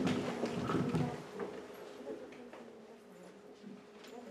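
Quiet room sound with scattered faint knocks and shuffles.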